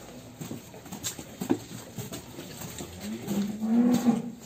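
Limousin-cross cattle giving a single low moo of about a second near the end, rising slightly in pitch and then dropping.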